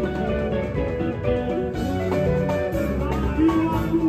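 Congolese rumba band playing live: electric guitar lines over bass and a steady drum beat.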